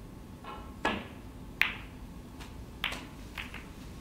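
Snooker balls clicking: the cue strikes the cue ball, which runs up into the pack of reds, and the balls knock together. A handful of sharp, separate clicks, the loudest about a second and a half in, then a few smaller ones.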